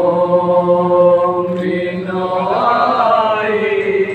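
Male voices chanting a noha, a Shia mourning lament, with long held notes and a change of pitch about halfway through.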